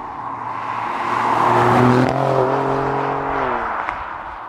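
Alfa Romeo Giulia Quadrifoglio, with its 2.9-litre twin-turbo V6, driving past: road and engine noise build to a peak about two seconds in, then the engine note drops in pitch as the car goes by and fades away. The exhaust note is subdued, which the driver suspects is because later cars had their exhausts muted.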